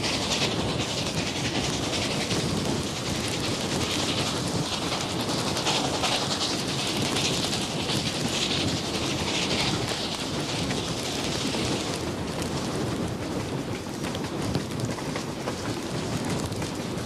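Reading T-1 4-8-4 steam locomotive No. 2102 working with a train, giving a loud, dense hiss of steam and exhaust. A brighter hiss fades about twelve seconds in.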